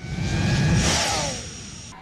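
A whooshing transition sound effect with a low rumble under a rushing hiss and a few faint steady tones. It swells at once and fades away over the last second.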